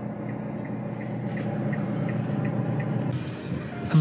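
A Mitsubishi Triton's 2.5-litre DI-D common-rail diesel idling, heard from inside the cab as a steady low hum with faint regular ticks. About three seconds in it gives way to an even outdoor hiss.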